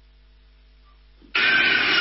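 A faint steady electrical hum, then, about a second and a half in, a loud dense sound cuts in abruptly.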